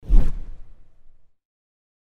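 Whoosh transition sound effect with a deep boom underneath. It hits at once and fades out within about a second.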